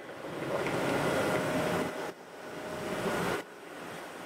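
Air rushing through a MistAway mist-collector blow-off box: one stretch of about two seconds, a brief break, then about one second more before it drops off, with a faint steady whine under it.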